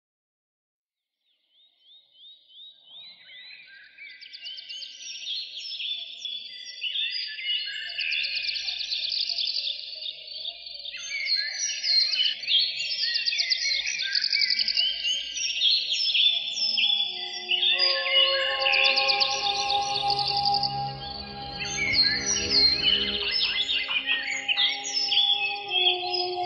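Birdsong fading in: many birds chirping and trilling in quick, overlapping phrases. About two-thirds of the way through, held music chords join in beneath the birds.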